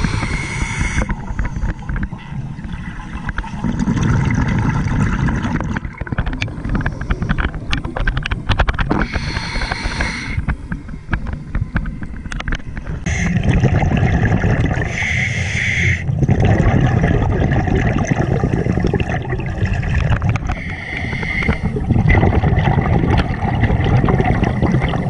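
Scuba diver breathing through a regulator underwater: a hissing inhale through the demand valve, then a low rumble of exhaled bubbles. The cycle repeats slowly, about four breaths.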